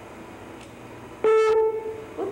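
Computer error alert sound: a faint click, then a single loud horn-like beep starting abruptly about a second and a quarter in and fading out within under a second. It signals that PowerPoint could not play the audio file, which it reports as invalid or corrupt.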